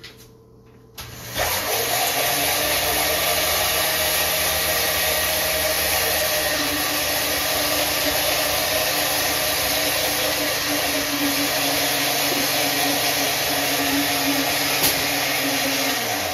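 Countertop blender starting about a second in, spinning up and then running at a steady speed as it blends a shake.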